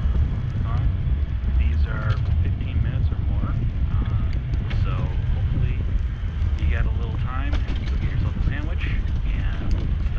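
Wind rumbling on the microphone of a camera carried on a moving bicycle, with faint speech coming and going under it.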